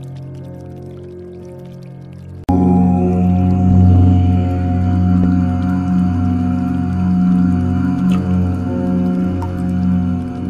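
A deep voice chanting a long, steady 'Om'. A fading tone gives way abruptly about two and a half seconds in to a new, louder chant.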